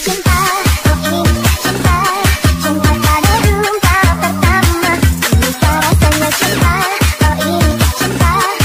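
Jungle dutch electronic dance music playing loud, with a fast, pounding bass line and a warbling synth melody over it.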